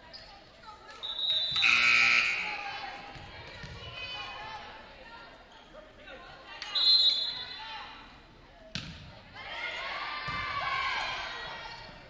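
Indoor volleyball play in a gymnasium with loud echoing player shouts and cheers, each burst preceded by a short high whistle. It happens twice, a few seconds apart. A single sharp smack of the ball comes about three-quarters of the way through, followed by more calling from the players.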